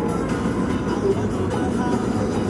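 Steady road and engine noise inside a moving car.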